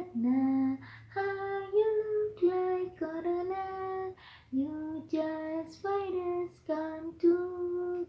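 A woman singing unaccompanied, a string of short held notes with brief breaks between phrases.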